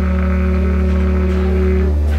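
Free jazz group playing live on baritone saxophone, double bass and drums. A long held low note sounds over a deep steady drone and breaks off near the end.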